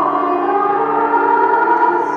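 Slow instrumental music with long held notes that drift gently in pitch.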